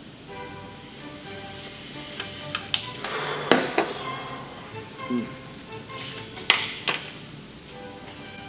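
Soft background music with held notes. Over it come a few sharp clicks and knocks as a tasting glass and a pen are handled on the bar top, some about three seconds in and two more near seven seconds.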